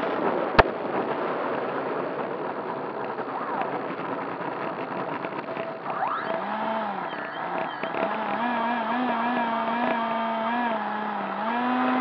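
Onboard sound of a Freewing F-86 Sabre electric ducted-fan RC jet rolling on the runway: a steady rushing noise of fan and airflow, with one sharp click about half a second in. From about six seconds in, a wavering tone rises over the noise.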